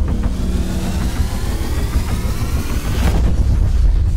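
Logo-intro sound effects: a deep rumble under a rising, engine-like whine that builds to a burst about three seconds in, then the rumble carries on.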